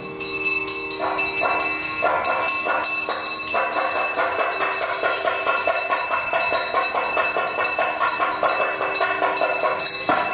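Temple ritual sound: steady, horn-like held tones over continuous rapid metallic ringing of bells, with no drumming.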